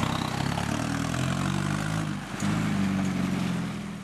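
The 1.9-litre turbodiesel four-cylinder of a VW New Beetle labouring under load as it pulls away with a heavy gooseneck flatbed trailer. The engine note rises, dips briefly about halfway through, then rises again.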